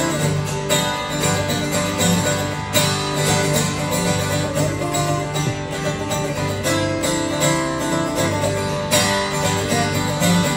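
Several acoustic guitars strummed and picked together in a live acoustic performance, with a steady strumming rhythm.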